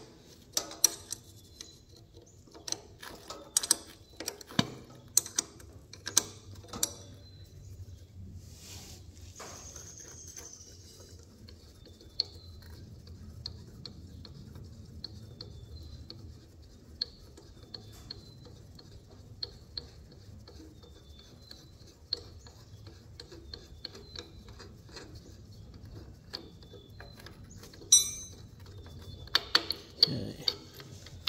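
Ratcheting box-end wrench clicking as it works a nut loose on an engine pulley bolt. A quick run of clicks comes in the first several seconds, followed by sparser ticks and one sharper click near the end.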